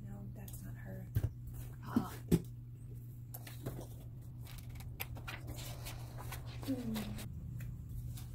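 A spiral-bound sketchbook and papers being handled: a few light knocks early, then a stretch of quick paper rustling as it is pulled out, over a steady low hum. A woman murmurs briefly.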